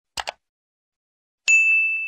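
Subscribe-button sound effect: a quick double mouse click, then about a second later a single bright notification-bell ding that rings on and fades.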